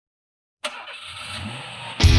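A car engine starting: it catches suddenly about half a second in, then runs with a low note that rises slightly.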